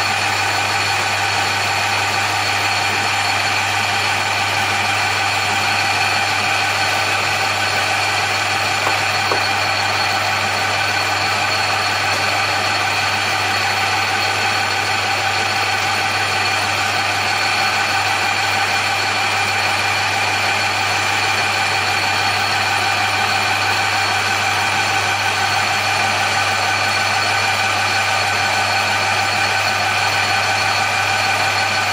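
Metal lathe running steadily while turning an aluminium bar into a piston blank: a steady hum with a constant whine from the motor and gearing under the cut.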